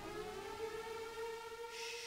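The opening of a song's intro: a synthesized tone with overtones glides upward like a siren and levels off into a steady held note. A brighter, higher layer joins it near the end.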